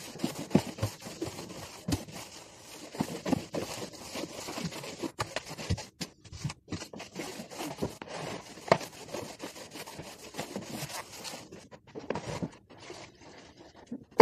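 A string mop pushed back and forth over a wet wooden floor: irregular scraping and swishing strokes with scattered sharp knocks.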